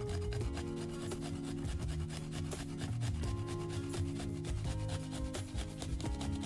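A peeled garlic clove being grated on a small stainless-steel box grater: quick, repeated scraping strokes against the metal teeth, with background music underneath.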